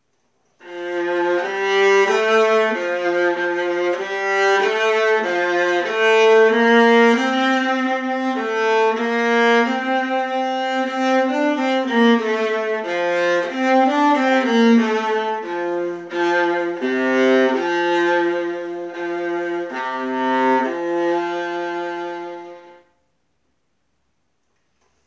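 Solo viola bowed, playing a simple beginner's song as a melody of separate notes, dipping to low notes in its second half; it stops about a second before the end.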